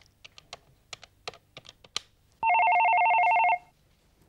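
Buttons of a push-button desk telephone clicked about ten times as a number is dialled, then an electronic telephone ring, a steady trilling tone of about a second, the loudest sound here.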